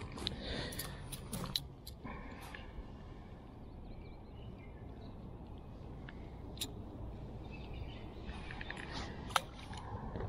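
Wind buffeting the microphone, a steady low rumble, with a few small handling clicks. Near the end comes one short sharp splash as a small roach is dropped back into the water.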